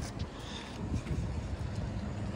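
Outdoor background noise: a low, steady rumble with a faint hiss above it.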